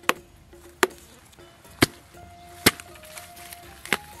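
A hand slapping a ripe watermelon on the vine: five sharp single knocks, about one a second.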